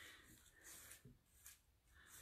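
Near silence, with a few faint swishes of a paintbrush stroking chalk paint onto a wooden drawer.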